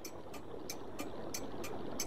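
Faint background hiss with soft clicks at a fairly even pace of about three a second: a quiet sound-effects bed between lines of dialogue.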